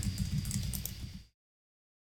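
Rapid small clicks over a low rumble at a computer desk. About a second and a third in, the sound cuts off to dead silence, as a microphone's noise gate would do.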